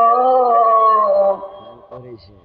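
A boy singing a Bengali Islamic gazal with no accompaniment, holding one long note at the end of a line that sinks slightly and fades out about one and a half seconds in.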